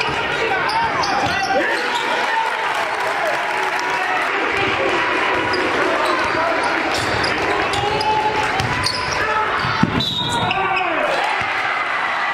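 Live basketball game sound in a gym: a basketball bouncing on the hardwood court among players' voices, with scattered short knocks and one sharper knock near the end.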